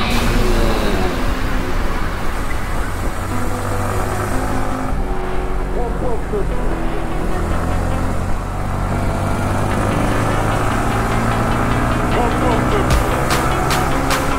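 Electronic background music with a fast, even beat that drops away in the middle and comes back near the end. Under it, a Yamaha MT motorcycle's engine runs, its pitch sliding up and down as the bike is ridden along.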